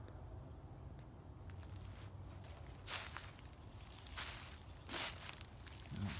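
Footsteps crunching on dry leaf litter in the woods, three steps about a second apart from about halfway through, over a low steady rumble of wind and handling on the phone's microphone.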